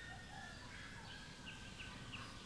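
Faint outdoor bird ambience: scattered high chirps and thin whistled notes, with a few quick falling chirps in the second half, over a low steady background hiss.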